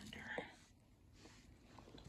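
Near silence: faint room tone, with a brief soft whisper-like breath in the first half-second.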